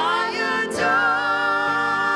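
Two women singing a slow worship song together over a keyboard, holding long notes that glide from pitch to pitch, with a short sung 's' about two-thirds of the way through.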